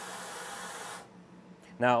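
Compressed air hissing steadily from a laser cutter's air-assist nozzle on its high-volume stage, fed at about 30 PSI, then cutting off suddenly about a second in.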